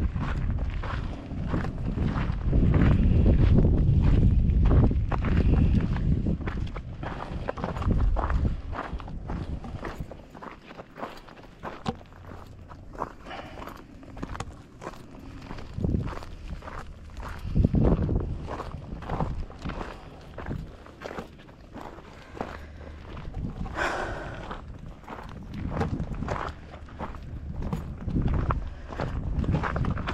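Footsteps walking steadily on a rocky gravel trail. Wind rumbles on the microphone for about the first third.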